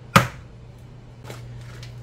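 An egg cracked against the rim of a mixing bowl: one sharp knock just after the start, then a faint tap about a second later.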